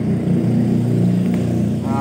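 Truck engine running, a steady low drone heard from inside the cab.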